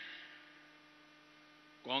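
Steady electrical mains hum, a low steady tone, heard in a pause in a man's amplified speech. His voice trails off at the start and starts again near the end.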